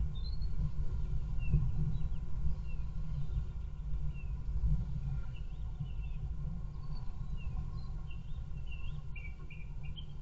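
Small songbirds giving short high chirps, scattered every second or so and coming more thickly near the end, over a steady low rumble.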